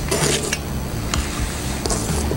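Palette knife scraping paint across a canvas, in two short scratchy strokes, one near the start and one near the end, over a steady low hum.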